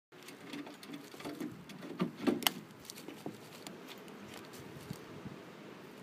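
Close handling noise as a ferret harness is fitted: coat fabric rustling and small clicks, busiest in the first half and loudest around two and a half seconds in, then settling to a quiet rustle.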